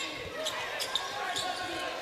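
Basketball game sound in an arena: a ball dribbling and sneakers squeaking on the hardwood, over a steady chatter of voices.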